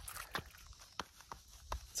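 Faint footsteps on dry dirt and gravel: a handful of short, uneven steps.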